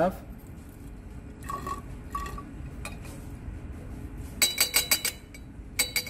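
Liquid being poured into a glass graduated cylinder, with glass ringing briefly twice. About four and a half seconds in comes a quick run of glass clinks, and one more clink near the end.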